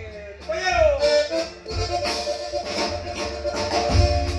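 Live norteño band striking up a song about a second in: a held accordion lead over drums and guitar, with a brief voice just before it.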